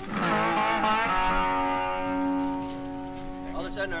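A pink Mule resonator guitar strummed once: a chord struck just after the start that rings on and slowly fades.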